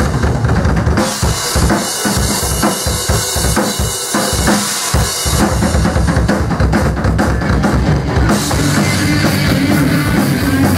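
Live punk band with the drum kit to the fore: fast bass-drum beats under a dense wash of crashing cymbals, with the bass and distorted guitars behind. The full band sound comes back in strongly near the end.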